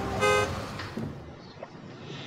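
A car horn gives one short toot as a car drives past, and the car's road noise fades away over the next second.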